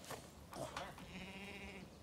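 A farm animal bleats once, a flat, buzzy call just under a second long that starts about a second in, after a few light knocks.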